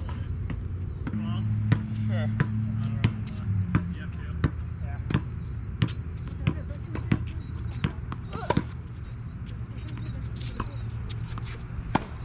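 Tennis ball rally on a hard court: sharp pops of racquet strings striking the ball and the ball bouncing on the court, coming every half second to second, over a steady low hum.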